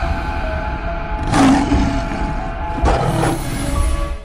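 Cinematic intro sting: sustained music with a deep rumble, and two loud noisy surges about a second and a half apart, building to a logo reveal.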